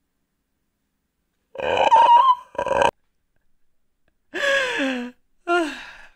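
A person's voice letting out loud wordless cries in four bursts, the first starting about a second and a half in; the later two slide down in pitch.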